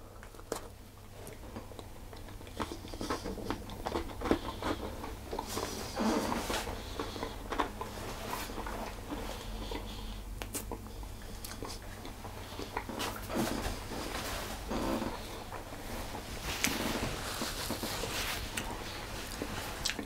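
A person biting into and chewing a chocolate marshmallow teacake: the dark chocolate shell and biscuit base crack and crunch in irregular small clicks, with soft mouth noises between.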